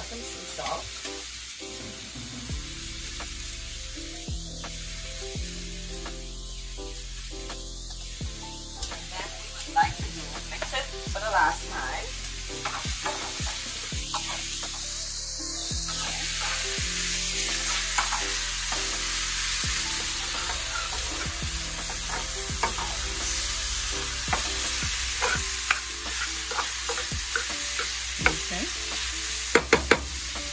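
Vegetables sizzling in oil in a skillet on a gas burner, stirred with a metal spoon that now and then clicks and scrapes against the pan. The sizzle gets louder from about halfway through.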